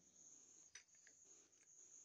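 Near silence in a pause between speech: only a faint, steady high-pitched tone, with one faint tick a little before the middle.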